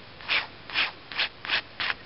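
Pen scratching across paper in five short, quick strokes, about two a second, as lines are drawn on a sketch.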